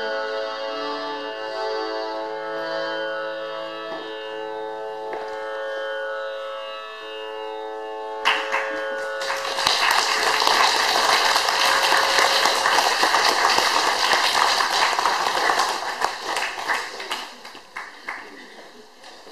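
Harmonium holding the closing notes of raga Charukeshi, then from about eight seconds in a small audience applauding, the clapping dying away near the end.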